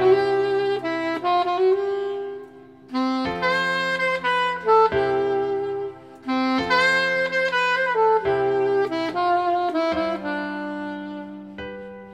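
Alto saxophone playing a lyrical melody in three phrases with short breaths between them, over a recorded accompaniment backing track; the last phrase fades out shortly before the end.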